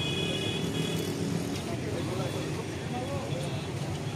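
Roadside street ambience: a steady rumble of road traffic with the faint, indistinct voices of a crowd, and a brief high tone in about the first second.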